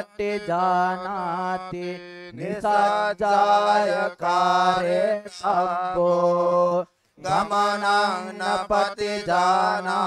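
A male monk chanting Pali Tipitaka scripture through a microphone in a melodic, sing-song recitation, with a brief breath pause about seven seconds in.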